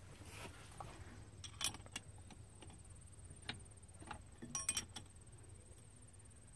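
A few faint metallic clicks and clinks as a steel hydraulic fitting is handled and threaded by hand into the load sense port of a tractor's power beyond block. There is a short ringing clink near the end.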